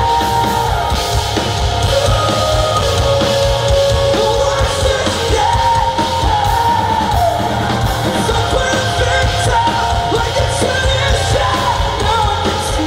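Rock band playing live and loud: a male singer's sustained, gliding vocal lines over electric guitar, bass and steady drums.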